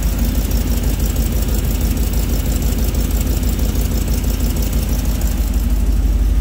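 Dodge Ram's 5.7 Hemi V8 idling, heard up close at the BBK shorty header, with a rapid, even ticking of escaping exhaust. It comes from the leak between the passenger-side header and the Y-pipe.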